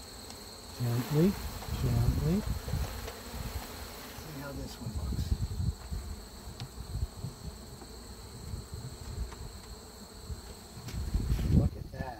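Russian honey bees buzzing around an open hive while comb frames are lifted and handled, with uneven low rumbles and bumps from the handling.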